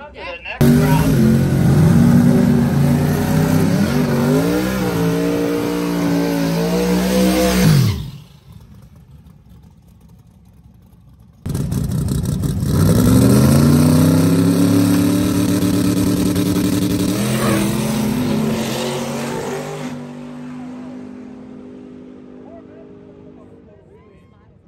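Drag race cars launching and accelerating hard down the strip, engines climbing in pitch and dropping back at gear changes. There are two separate runs: the first starts suddenly and cuts off about eight seconds in, and the second comes in loud at around eleven seconds and fades away as the cars pull down the track.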